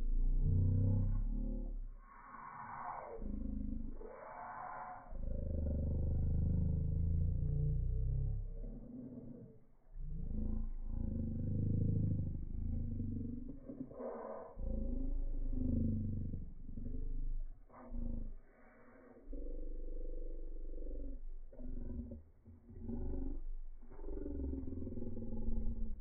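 Slowed-down audio from slow-motion footage. The sounds are stretched and pitched far down into deep, growling rumbles that waver up and down in pitch, coming in uneven surges.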